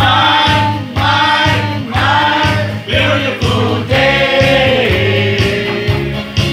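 A group of people singing together through microphones, with electronic keyboard accompaniment holding a steady bass. The singing comes in phrases about a second long, with held, wavering notes.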